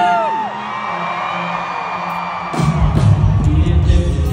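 Live country band in an arena, heard through a phone: a sung note slides down at the very start over a quieter, stripped-back section with the crowd whooping and cheering, then the drums and bass come back in loudly about two and a half seconds in.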